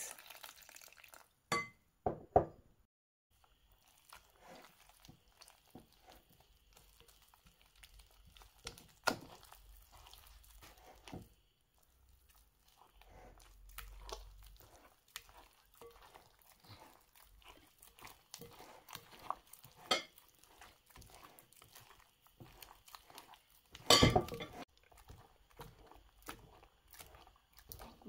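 A hand beating a wet flour-and-water yeast dough in a glass bowl, after a short pour of water at the start: irregular soft slaps and squelches of the sticky batter, with occasional knocks against the glass. The loudest of these, a short cluster of knocks, comes about four seconds before the end.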